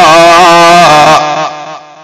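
A man's voice holding one long, wavering sung note at the end of a line of a Sindhi naat. The note dies away about a second in, leaving a short low lull.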